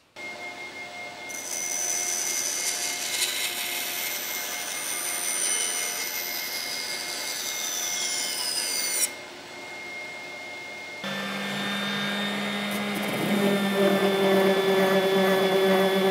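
Bandsaw running, its blade cutting off excess cherry banding glued around a small ash box for most of the first nine seconds. From about eleven seconds in, an electric random orbit sander runs on the box and gets louder near the end.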